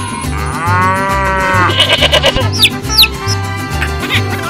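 A cow mooing once, a long call of about a second and a half that rises and then falls in pitch, over background music with a steady beat. A few quick falling whistle sounds follow.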